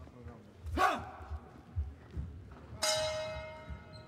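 Boxing ring bell struck once about three seconds in, ringing and fading over about a second: the signal that starts round three.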